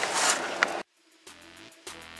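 Car cabin and road noise that cuts off suddenly just under a second in, followed by electronic background music with a regular beat.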